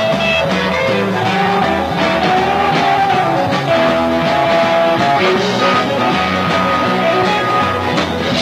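Rock band playing, with an electric guitar holding lead notes over bass and drums.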